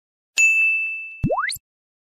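Intro logo sound effect: a bright bell-like ding that rings and fades for about a second, then a quick swoop gliding steeply upward in pitch that cuts off suddenly.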